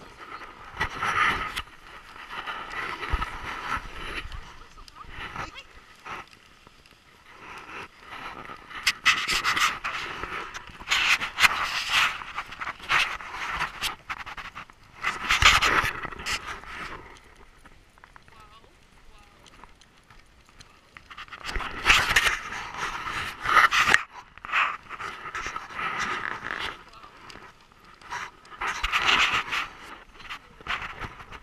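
Heavy panting breaths in irregular bursts, with quieter gaps between them.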